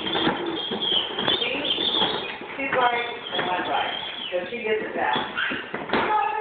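A young child's wordless voice, rising and falling, like a child making engine noises, over the rattle and knocks of a plastic ride-on toy's wheels rolling on a tile floor.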